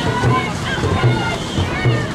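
Dragon boats racing past at close range: crews and onlookers shouting, paddles splashing in the water, and the bow drums beating out the stroke about twice a second.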